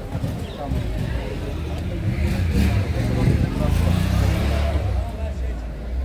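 A motor vehicle passing close by on a city street: a low engine rumble swells from about two seconds in and eases near the end, over the chatter of people walking past.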